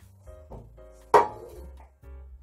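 One sharp metallic clunk about a second in, as the metal loaf tin is knocked while the banana bread is turned out of it, over steady background music.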